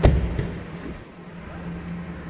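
A single sharp thud from a pickup truck's door right at the start, dying away within half a second, followed by a faint steady low hum.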